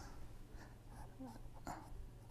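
A pen writing on paper, faint scratching strokes, over a low steady hum.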